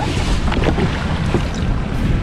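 Steady wind rumbling on the microphone over the wash of the sea, with a few faint splashes of water.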